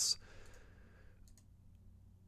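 A couple of faint computer mouse clicks about halfway through, as a map layer is ticked on in GIS software, in a quiet pause after the end of a spoken word.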